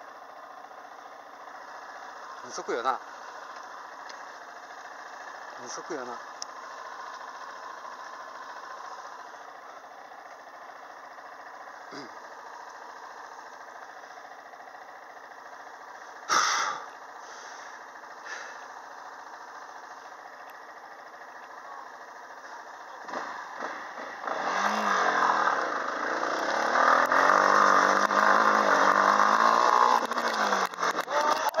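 Yamaha Serow 250's single-cylinder engine running low with a few brief distant voices, then about 24 s in revving hard and rising in pitch under load as the trail bike charges up a steep dirt slope.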